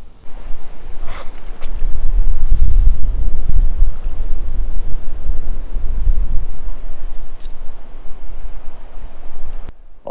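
Wind buffeting the microphone on a windy lakeshore: a loud, gusting low rumble that builds about two seconds in. Shallow lake water moves at the shore underneath, and the sound cuts out briefly just before the end.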